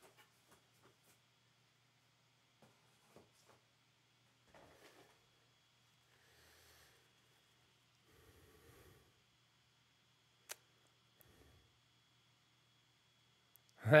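Mostly quiet, with a few faint soft rustles and light clicks from a stack of trading cards being handled and sorted by hand.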